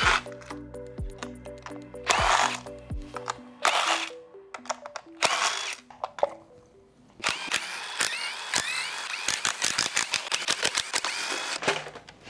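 Background music, with a handheld power tool running in several short bursts, spinning up with a rising whir, as valve cover bolts are taken out of an engine.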